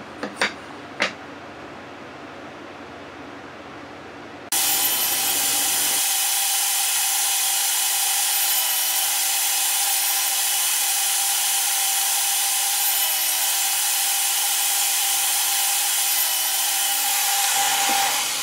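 A few light knocks as the board is set on the crosscut sled, then a table saw starts about four and a half seconds in and runs steadily. Its pitch dips briefly three times as the blade takes crosscuts through the rail stock, and its lower tone falls away near the end.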